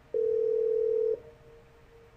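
Telephone ringback tone from a Cisco IP Communicator softphone placing a test call: one steady electronic tone about a second long while the call rings out to the called line.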